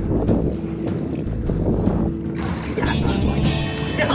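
Water rushing and splashing around a catamaran's hull while a swimmer holds a rope alongside, with wind buffeting the microphone.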